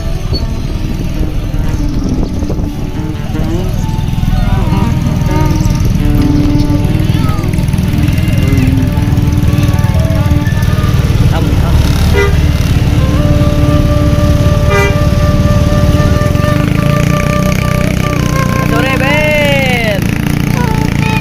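A Hino coach bus's diesel engine running close by while its telolet horn plays multi-note tunes, with long held tones in the second half and, near the end, tones that rise and then fall.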